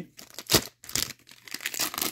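Plastic foil wrapper of a hockey card pack crinkling and tearing as it is opened, with a couple of sharp clicks in the first second.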